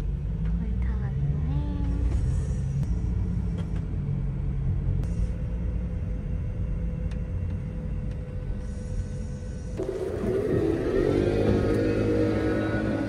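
Low, steady road rumble inside a moving passenger van's cabin. About ten seconds in, the rumble gives way to a different, pitched sound.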